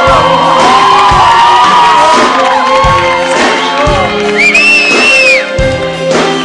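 Live band playing a romantic Brazilian pop song, with low drum hits about once a second and an audience cheering and singing along. There is a high whoop about four and a half seconds in.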